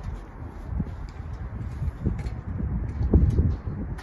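Wind buffeting the microphone as a low rumble, with a few dull knocks, the loudest about three seconds in.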